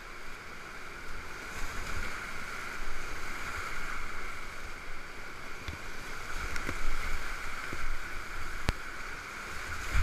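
Whitewater rapids rushing steadily around a kayak, with a few sharp knocks in the second half, the sharpest about nine seconds in.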